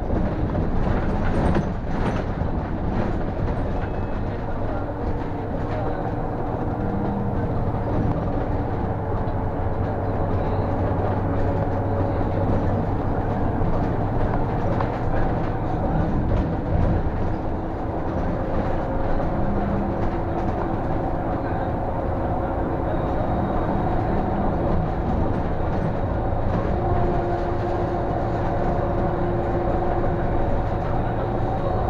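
City bus driving along a road, heard from the driver's cab: a steady engine and tyre drone with a whine that shifts in pitch a few times as the bus changes speed.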